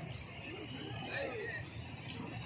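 Outdoor roadside ambience: faint voices of people nearby, with high chirping over a steady low background noise.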